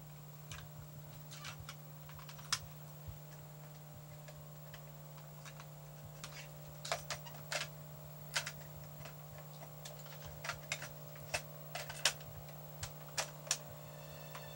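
Irregular small plastic clicks and taps of a portable stereo being handled and its buttons pressed, sparse at first and coming more often in the second half, over a steady low hum.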